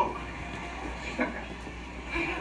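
A lull in a room: low background murmur with a steady hum, and one short voice sound about a second in.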